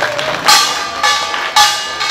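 Korean pungmul (nongak) percussion band playing: two loud struck accents about a second apart, each ringing on afterwards.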